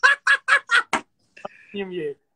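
A man laughing in five quick, evenly spaced bursts over about a second, followed near the end by a brief voiced sound.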